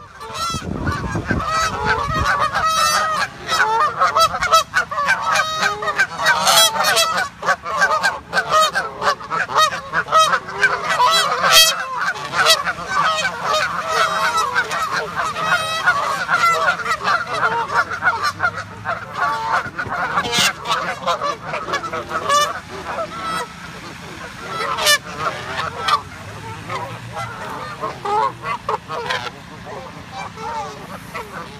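A flock of Canada geese honking, many calls overlapping one another without a break; the calling grows quieter over the last several seconds.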